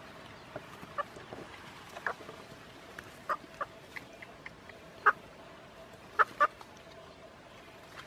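Rooster caught in a snare giving short, sharp clucks and squawks, scattered a second or so apart, the loudest about five seconds in and a pair just after six seconds.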